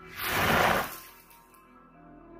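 Film sound effect for a magical blast: a single burst of hissing noise. It swells just after the start and dies away about a second in, over soft background music.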